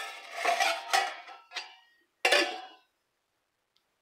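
A steel plate used as a pot lid scraping and clanking against a metal cooking pot: a ringing scrape over the first second, then a short knock, then a sharper clank a little past two seconds in.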